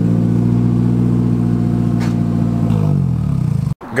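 Nissan 240SX engine idling steadily at its twin exhaust tips, then winding down and dying out about three seconds in as it is switched off.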